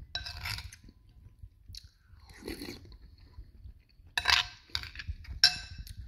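A person chewing a mouthful of cabbage soup close to the microphone, in several short, wet, crunchy bursts, the loudest near the end.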